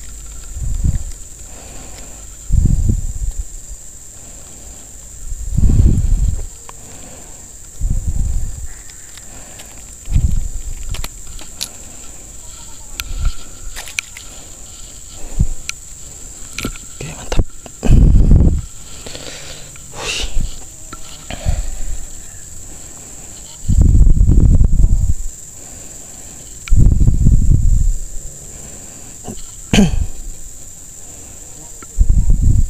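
Steady high-pitched insect drone, with loud low rumbles coming every few seconds.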